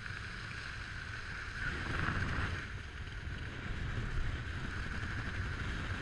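Wind rushing over a skydiver's helmet-camera microphone during parachute descent under canopy: a steady low rumble with a higher hiss that swells briefly about two seconds in.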